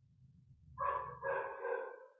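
An animal calling twice in quick succession, about a second in: two drawn-out, pitched calls, over a faint low hum.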